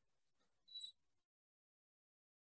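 Near silence: faint hiss with one brief, faint high tone a little under a second in, then the sound cuts out to dead silence.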